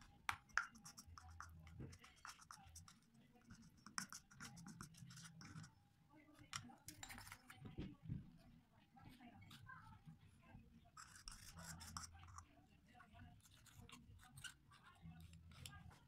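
Faint, irregular scraping and light clicks of a small spatula stirring and scooping a thick paste in a plastic bowl: eyebrow powder being worked into petroleum jelly for a homemade brow gel.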